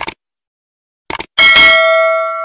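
Subscribe-button animation sound effects: a short mouse click at the start, two quick clicks about a second in, then a notification-bell ding that rings on.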